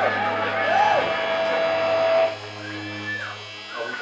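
A live band with electric and acoustic guitars playing the last bars of a song, with sliding, arching notes over a held chord. About two seconds in the playing drops off suddenly, leaving quieter held notes ringing out.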